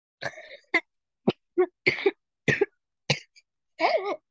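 A person coughing in a run of about eight short coughs, the last one drawn out with some voice in it.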